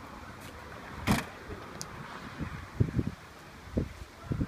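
A single sharp knock about a second in, a brief click, then several dull low thumps.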